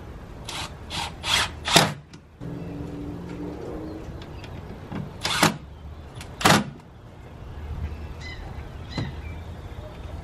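Cordless drill driving screws through an OSB board into wooden legs: the motor runs with a whine for a second or two, its pitch rising near the end of the run. Several short, sharp noisy bursts come before and after the run.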